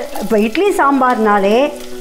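A woman talking over oil sizzling as chopped shallots are tipped into a hot pan of tempering: mustard seeds, curry leaves and green chillies. Her voice is the loudest sound.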